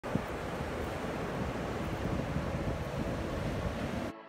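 Ocean surf washing steadily on a sand beach, with wind rumbling on the microphone.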